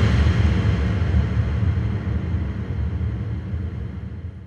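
A deep rumbling boom from dramatic background score: a heavy low hit that lands just before and fades slowly away.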